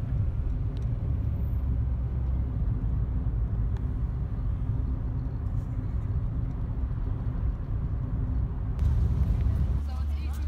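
Road noise heard inside a moving car: a steady low rumble of engine and tyres. The sound changes abruptly near the end.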